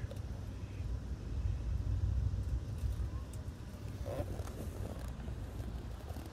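Steady low rumble of a moving passenger train, heard from inside the coach.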